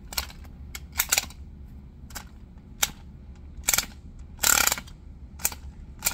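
Small air-powered toy car's piston engine, fed from a pressurized plastic bottle, clicking and giving short puffs of air at irregular intervals as its wheels are turned by hand, with one longer hiss of air about four and a half seconds in. It does not run on its own, which is put down to too little pressure.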